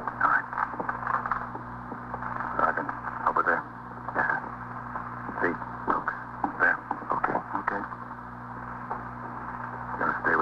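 Indistinct voices on an old, narrow-band radio drama recording, over a steady low hum.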